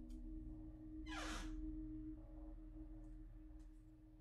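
Faint, sustained low drone tones, eerie background ambience, with a single breathy whoosh about a second in that sweeps from high to low.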